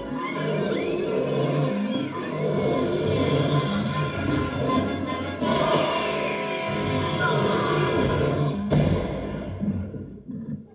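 Soundtrack of an animated test reel played over a hall's speakers: music mixed with thuds and crash sound effects, with one heavy hit near the end, after which it falls away.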